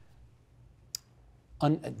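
A pause in a man's speech: quiet room tone, with a single short sharp click about halfway through, then his voice starts again near the end.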